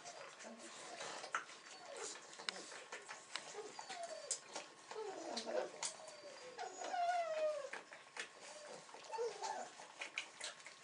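Six-week-old Weimaraner puppies whining and squealing in many short cries that mostly fall in pitch, with a longer whine about seven seconds in. Scattered clicks sound among the cries.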